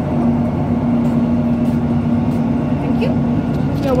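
Class 156 'Super Sprinter' diesel multiple unit's underfloor Cummins diesel engine running, heard from inside the carriage as a steady low rumble with a constant hum.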